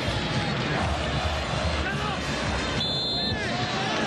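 Football stadium crowd noise: a steady din from the stands with faint voices in it, and a short high whistle about three seconds in.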